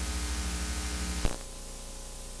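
Hiss and mains hum from a blank, unrecorded stretch of analog videotape. A brief click comes a little over a second in, after which the hiss is slightly quieter.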